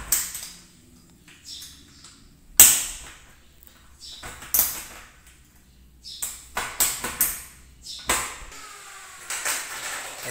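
Sharp metal clicks and clacks from a door knob lockset being worked by hand, the loudest about two and a half seconds in and several more near the end. The knob has just been fitted and its lock is not catching yet.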